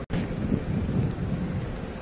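Wind buffeting an outdoor phone microphone: a gusty low rumble, after a brief dropout at the very start.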